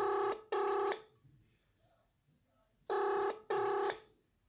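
Telephone ringing tone in the double-ring pattern: two short rings, then two more about three seconds later, each ring a steady buzzy tone.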